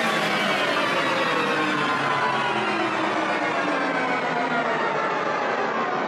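Breakdown of a darkpsy trance track: the kick drum and bassline are gone, leaving a dense, steady layered synth texture. It grows slowly duller as its treble is filtered away.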